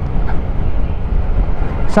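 Wind buffeting the microphone and riding noise from a Honda ADV 160 scooter moving along a street: a steady, loud, low rumble.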